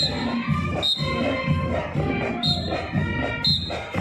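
Marching band playing on the move: pitched horn lines over a steady drum beat of about two pulses a second, with short, bright high notes cutting in four times.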